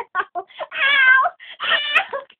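A girl's short giggles, then a long, high-pitched, wavering squeal about a second in and a second, shorter squeal near the end.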